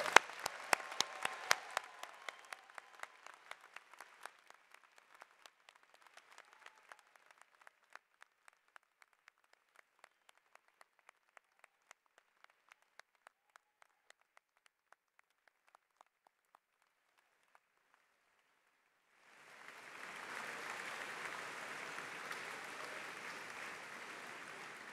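Crowd applauding: loud, dense clapping at first that thins out to scattered single claps and dies away over about fifteen seconds. A steady hiss comes in a few seconds before the end.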